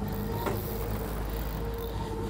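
Outboard motor running steadily at low speed, with a constant low hum, as the boat moves through the water. There is a faint tick about half a second in.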